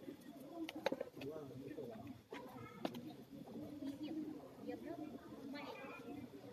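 People talking quietly, with a bird calling and a few sharp clicks, the loudest about a second in and just before three seconds.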